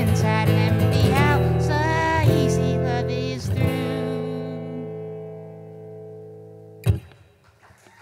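Acoustic guitar strummed under a wordless sung vocal, closing a song on a final chord that rings and slowly fades. Near the end a short, sharp knock cuts the ringing off.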